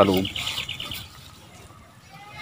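A bird chirping, a high call lasting about a second, as a man's voice trails off.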